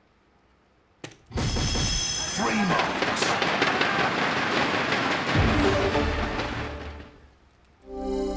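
A soft-tip dart strikes an electronic dartboard with a sharp click about a second in. Right after, the board's electronic scoring effect and loud crowd noise rise together, carry on for several seconds, and fade out near the end.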